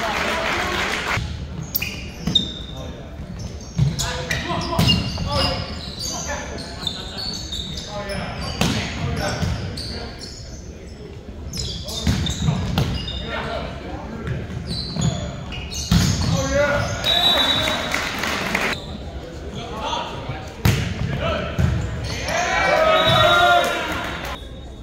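Indoor volleyball play in a large gym: sharp smacks of the ball being hit and striking the hardwood floor, echoing in the hall, mixed with players calling out and spectators' voices that rise near the end.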